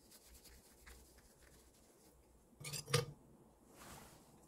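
Faint rubbing of a cotton cloth on a ceramic teacup, then a short clatter of ceramic teaware being handled and set down about two and a half seconds in, ending in one sharp clink.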